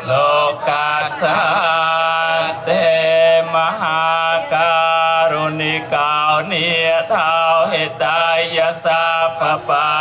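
Theravada Buddhist monks chanting Pali verses in unison, a steady recitation held mostly on one level pitch with short glides between syllables and brief pauses for breath.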